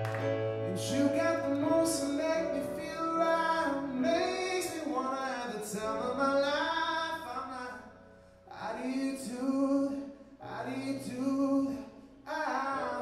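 A man sings a song live while accompanying himself on an electric stage piano. A sustained, melismatic vocal line runs over held keyboard chords and bass notes, dipping briefly twice in the second half.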